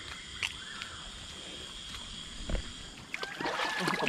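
Water sloshing and splashing in a shallow muddy fish pond as a wire basket net is worked through it, with a low thump about two and a half seconds in and busier splashing near the end. A steady high-pitched tone runs underneath.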